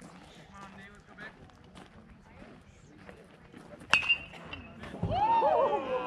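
An aluminium baseball bat hits the ball about four seconds in, a sharp ping that rings for about half a second. About a second later, several voices break into loud shouts and cheers.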